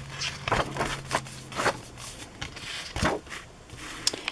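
Paper pages of a spiral-bound handmade scrapbook being turned and handled: several short rustles and scrapes.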